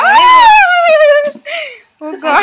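A person's long, high squeal that rises and then slowly falls over about a second, followed by a short breathy sound: a cry of fright at the live fish flopping on the floor.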